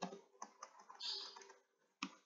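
A few faint key presses on a computer keyboard, with a short hiss about a second in.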